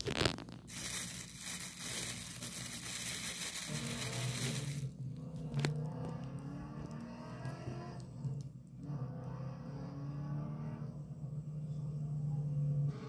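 Close rustling and scraping from hands and the phone rubbing against a knit fabric while a metal-link bracelet watch is handled, dense for the first five seconds. After that a steady low hum with faint tones above it carries on.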